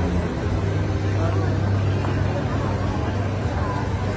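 Busy city street crossing: a steady low rumble of traffic engines under crowd chatter and passing voices.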